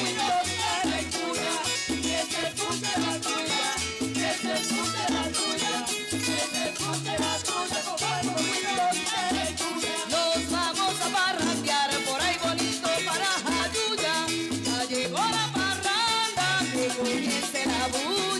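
Puerto Rican jíbaro Christmas music, a trulla, played live by a small group: a cuatro-led instrumental passage over guitar, a steady walking bass and a güiro scraping the beat. The melody line slides and bends about two thirds of the way through.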